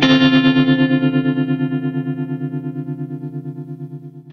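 Electric guitar chord struck once and left to ring through a Surfy Industries Surfytrem tremolo pedal in Blackface mode, with reverb: the chord pulses quickly and evenly, about eight times a second, while it slowly fades.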